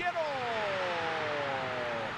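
A football commentator's long, drawn-out shout of the scorer's name, sliding slowly down in pitch, over a stadium crowd cheering a goal.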